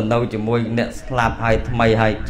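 Speech only: a man talking steadily in Khmer, a Buddhist monk preaching into a microphone.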